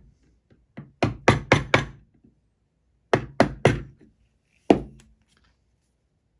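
Wooden mallet tapping a carving chisel into a Christmas-tree trunk to raise small curled chips. The taps come in two quick runs of four, then one more strike near the end.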